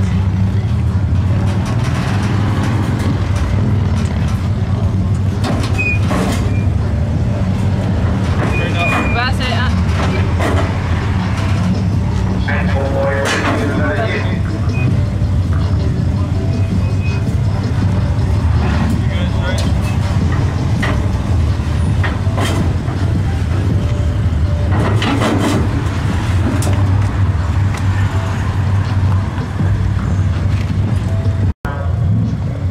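Lifted Ford F-150 pickup's engine running at low speed, a steady low rumble, as the truck is driven slowly down a trailer ramp.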